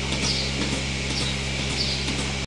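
Milking machine running on a cow's udder: a steady low hum with a hissing background.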